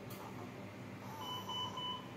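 Three short, high electronic beeps in quick succession from a medical monitor or alarm, over a steady low equipment hum.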